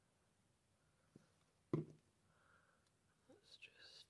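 Mostly near silence with a single sharp tap a little before halfway. Near the end come brief light clicks and rustling as a plastic glue bottle is put down on the wooden tabletop.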